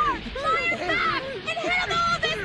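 Cartoon characters' voices, talking or shouting.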